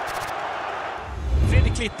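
Even hiss of a stadium crowd, with a low rumble swelling about a second and a half in and stopping abruptly just before the end, as a man's voice begins.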